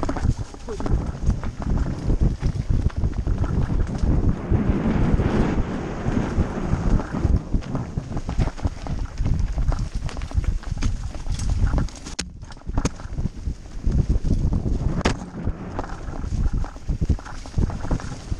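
Mountain bike clattering and rattling over a rough, stony dirt trail at speed, with tyres crunching on dirt and stones in a dense run of irregular knocks. Wind buffets the microphone, giving a low rumble underneath.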